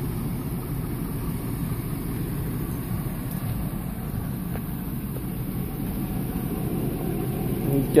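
Steady low rumble of an idling engine, with a couple of faint ticks near the middle.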